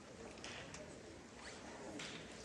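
Faint rustling and shuffling in a concert hall with no music playing: a few short swishes, like clothing, paper or programs being handled.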